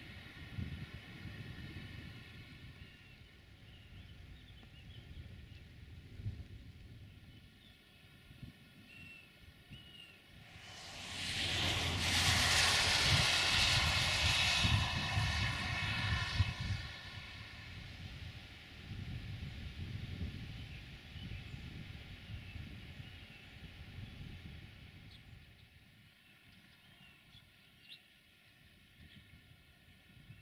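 A road vehicle passing close by on a wet road: a hissing rush swells over about two seconds, then fades over the next four. A steady low rumble runs underneath.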